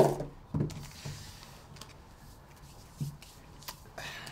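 Oreo cookies being handled and pulled apart on a tabletop: a few faint, short clicks and rubbing sounds.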